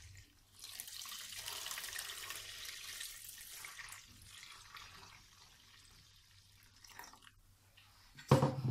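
Warm water pouring from a stainless steel electric kettle into a steel mixing bowl of flour and yeast, a steady splashing stream that starts about half a second in and tails off about halfway through. A couple of faint knocks near the end.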